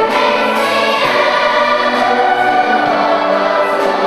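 Massed youth and school choir singing with a school orchestra of violins and harps. Voices and strings hold sustained notes at a steady level.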